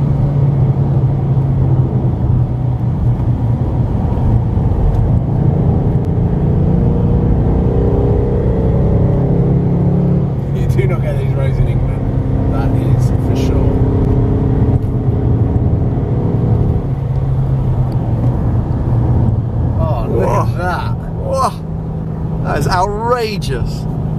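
Car engine running steadily at cruising speed with tyre and road noise, heard from inside the cabin, the engine note shifting a few times. People talk briefly in the middle and again near the end.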